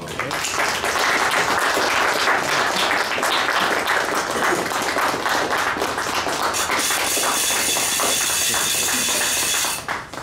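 Audience applauding, starting suddenly at the end of a piece and dying away near the end, with voices mixed in.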